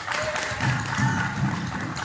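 Music with sharp claps and crowd voices.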